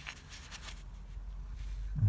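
Quiet low background rumble with a few faint clicks and rustles in the first second, like light handling noise; no clear mechanical event.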